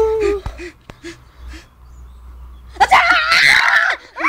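A child laughing in a few short bursts, then a loud, high-pitched shriek starting near three seconds in.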